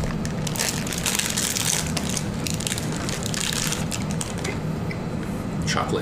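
Plastic cookie wrappers being crinkled and torn open, a dense, continuous run of crackles.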